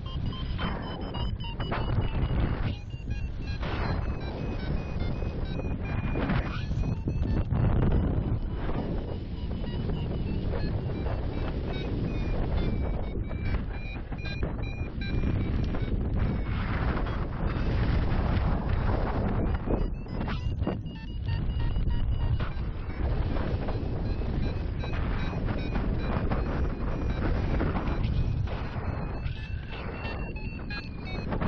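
Wind rushing over the microphone of a paraglider in flight, rising and falling in gusts. Under it a paragliding variometer beeps in quick pulses whose pitch drifts up and down, the sign that the glider is climbing in lift.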